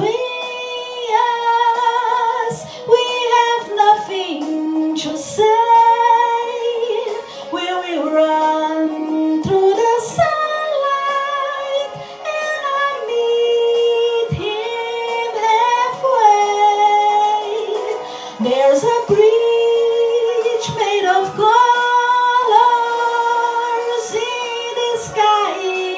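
A woman singing into a microphone, holding long notes and sliding between pitches, with no clear words.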